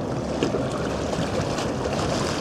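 Steady rushing noise of a boat under way, with water and wind mixed in. There is a brief knock about half a second in.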